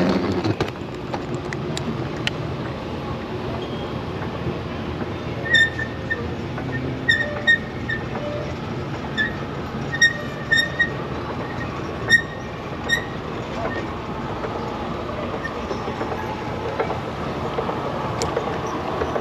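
Escalator running: a steady mechanical rumble with a string of short, high squeaks between about five and thirteen seconds in.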